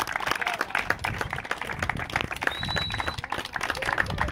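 A group of people applauding, many hands clapping steadily and out of step with one another.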